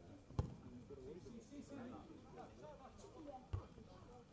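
Two dull thumps of a football being kicked, one about half a second in and one near the end, over faint distant shouting from players on the pitch.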